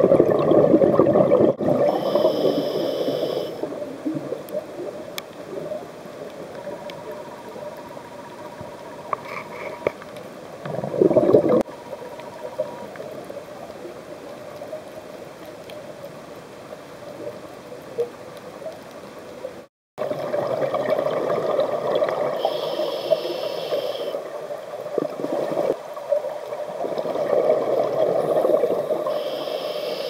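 A scuba regulator releasing bursts of exhaled bubbles, heard underwater. The bubbling is strongest in the first few seconds and again in the last third, quieter in between, with one short loud burst near the middle.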